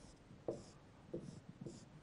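Dry-erase marker drawing a few short lines on a whiteboard, faint separate strokes of the felt tip on the board.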